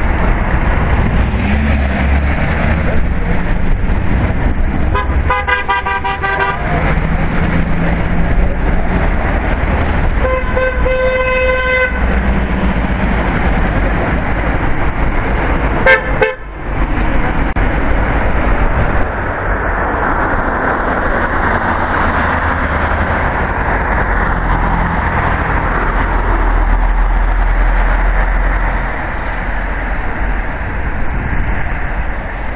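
Road traffic passing with car horns honking three times: a horn about five seconds in, a longer blast of nearly two seconds around ten seconds in, and a short toot about sixteen seconds in.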